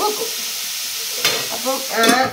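Food sizzling as it fries in a wok on a gas stove: a steady hiss while it is stirred, with one sharp knock a little past halfway.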